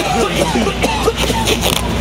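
A scuffle between men: short shouts and grunts as they grapple, with knocks and the rustle of clothing.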